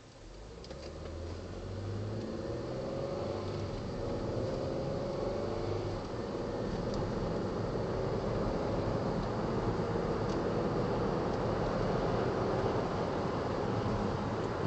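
Inside the cabin, a 2010 Ford Flex's twin-turbo V6 pulls away from a standstill: the engine note rises over the first few seconds as the car gathers speed, then settles into a steady run with tyre and road noise.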